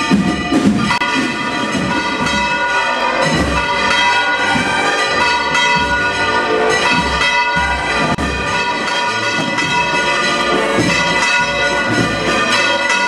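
Church bells pealing continuously, many strokes overlapping and ringing on into one another.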